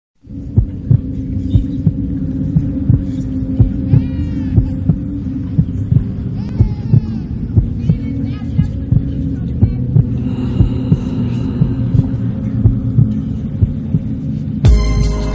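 A low droning hum with a steady pulse of deep heartbeat-like thumps, about two a second, laid down as an intro sound bed. Two brief warbling sweeps sound a little before the halfway point, and faint high steady tones join near the end.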